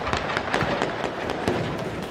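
Gunfire: a rapid, irregular string of sharp shots, several a second.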